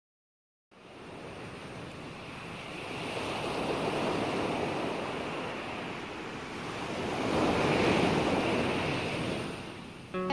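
Ocean surf: a rushing noise that starts just under a second in and swells and falls back twice, the second wave the louder.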